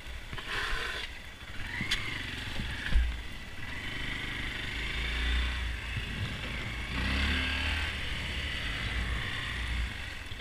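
Honda Grom's 125 cc single-cylinder engine running as the bike is ridden, revs rising twice, with heavy wind on the microphone. A sharp knock about three seconds in.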